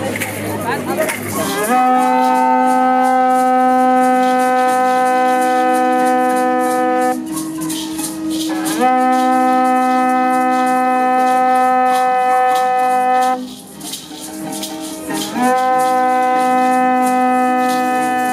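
A conch-shell trumpet blown in three long, steady blasts with short pauses between them, over continuous shaking of rattles. Before the first blast there are a couple of seconds of crowd noise.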